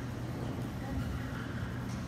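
Steady low hum of a large hall with faint background murmur of voices.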